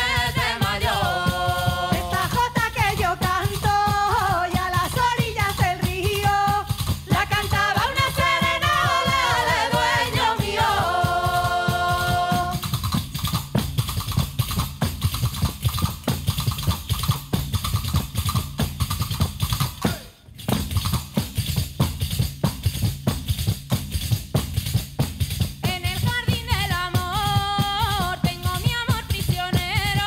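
Traditional Castilian folk song: several women's voices sing in harmony over a steady beat of hand-struck frame drums with jingles (panderetas). About twelve seconds in the voices stop and the drums carry on alone, breaking off for an instant just after twenty seconds, and the singing comes back near the end.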